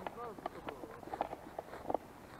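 Faint, distant talking in short fragments, with footsteps through tall grass.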